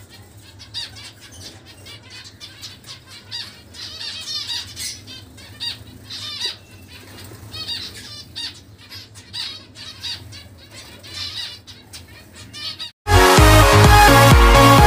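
A flock of small finches in an aviary chirping constantly, many short, high calls overlapping one another. Just before the end the bird sound cuts off and loud electronic dance music begins.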